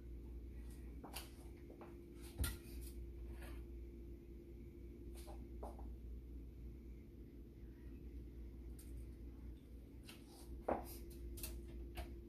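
Metal canning jar lifter clinking against hot glass pint jars as they are lifted out of the pressure canner and set down on a towel: scattered light clicks and knocks, with two louder knocks, one about two seconds in and one near the end. A faint steady hum runs underneath.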